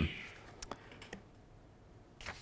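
Two faint, sharp clicks of a laptop key, pressed to advance a presentation slide, just after the tail of a spoken "um".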